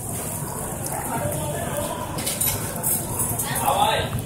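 People talking in the background, over a steady noisy hiss.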